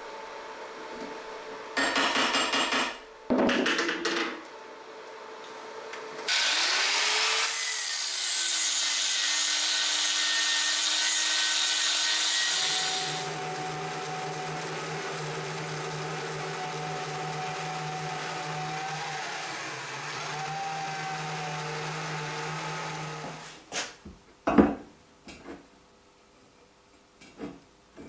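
A portable metal-cutting bandsaw starts up with a brief falling whine and cuts square steel tube, a loud hiss lasting several seconds. It then runs on for about ten seconds as a steadier, lower hum before stopping. Two short, loud rasping bursts come earlier, and a few sharp clanks of steel tube being handled come near the end.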